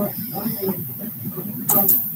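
Indistinct background voices talking in a room, over a steady hiss, with two short sharp noises near the end.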